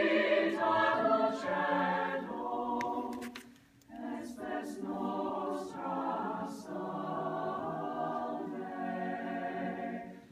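Mixed choir of men's and women's voices singing unaccompanied in sustained chords, with a short break between phrases about three and a half seconds in before the singing resumes.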